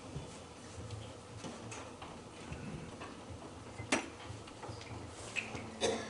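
Low room hum with a few irregular sharp clicks and knocks, the loudest about four seconds in and again near the end; a faint steady low tone begins near the end.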